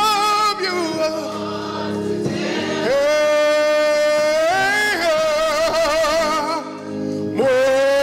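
A man singing gospel into a microphone, with long, wavering held notes over steady sustained chords. The longest note starts about three seconds in and is held for roughly two seconds; a new phrase begins near the end.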